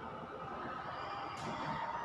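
Steady faint room noise with a marker pen stroking across a whiteboard, a brief scratch about one and a half seconds in.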